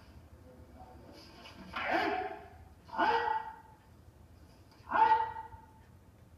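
Three short, loud kiai shouts from martial artists performing Jodo kata, the first two a second apart and the last about two seconds later, heard through a television speaker over a low hum.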